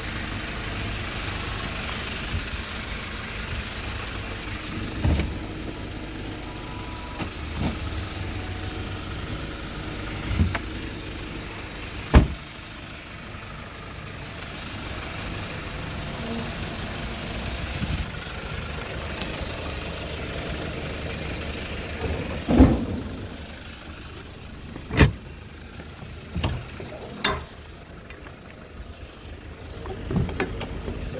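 Hyundai Porter's 2.5-litre diesel engine idling steadily, with a series of sharp knocks and clunks over it, the loudest about twelve seconds in and three more near the end.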